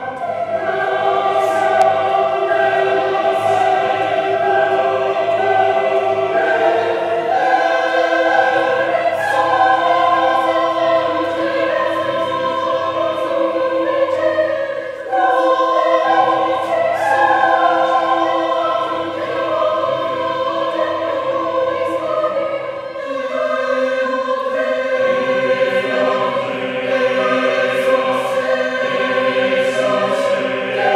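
A large mixed choir singing unaccompanied in a reverberant church, holding sustained chords in many voice parts. The sound dips briefly about halfway through, and the lowest voices drop out for a few seconds about three quarters of the way through.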